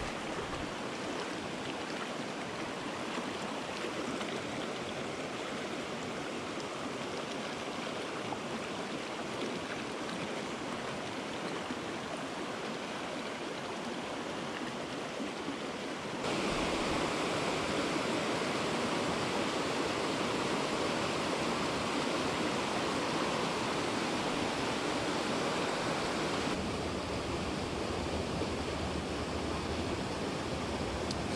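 Rocky mountain stream rushing over stones and small cascades, a steady wash of water. It turns suddenly louder just past halfway and eases back slightly a few seconds before the end.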